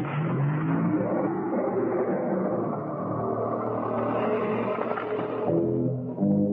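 Film soundtrack mix: dramatic music over a continuous rumbling noise, without a break.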